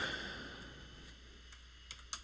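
Quiet room tone with two or three faint computer keyboard key clicks in the second half.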